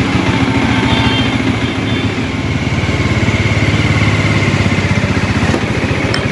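Motorcycle engine running steadily at idle, with an even, low firing beat.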